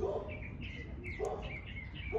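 Small birds chirping: a series of short, high chirps.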